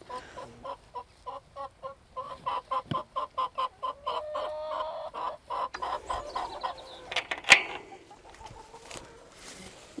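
Domestic hens clucking: a run of short, quick clucks, about three a second, with a longer drawn-out note in the middle. Near the end there is a single sharp click, the loudest sound.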